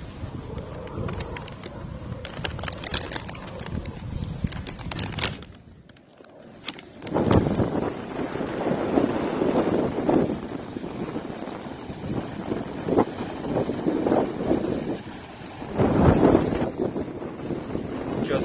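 Wind buffeting the microphone in gusts, with surf washing on a rocky shore beneath it. The sound drops away briefly about six seconds in, then the wind comes back louder.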